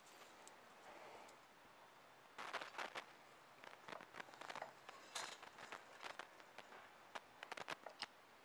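Faint clicks and taps of metal wire rope clips being slid onto a steel hoist cable and set in place by hand. They are sparse at first, then come in a quick cluster about two and a half seconds in and keep going on and off through the rest.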